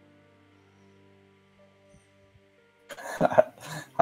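Faint background music with held notes, then near the end a loud, short non-speech vocal burst from a man in two quick pulses.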